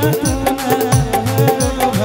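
Live stage band playing an instrumental passage: electronic keyboard melody over a steady beat of deep drum hits that drop in pitch, with sharp percussion clicks.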